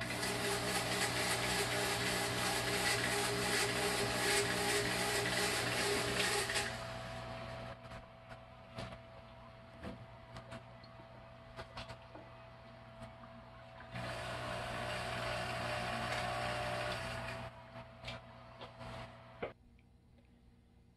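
A hardware-store fog machine firing: its pump buzzes loudly with a hiss of fog for about seven seconds, stops, then fires again for about three seconds from about fourteen seconds in. A steady electric hum and a few clicks run between the bursts, and it all stops just before the end.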